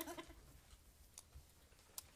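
Near silence: room tone, with a faint laugh trailing off at the start and a couple of small clicks.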